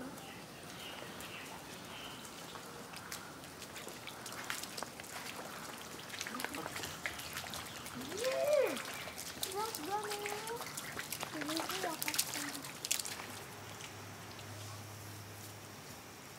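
Wheels of a manual wheelchair and bare feet splashing and sloshing through a shallow muddy puddle, with scattered short splashes. Children's voices call out briefly around the middle.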